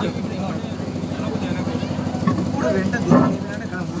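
An engine idling steadily under scattered voices, with a louder voice about three seconds in.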